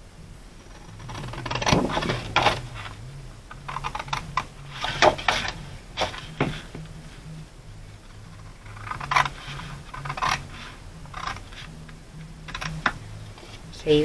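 Scissors cutting through scrapbook paper: several runs of quick, crisp snips with short pauses between them.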